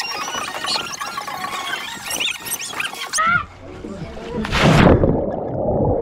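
A person jumps off a boat into the sea: a loud splash about four and a half seconds in, then muffled bubbling as the camera goes under water. Before the jump, voices are heard.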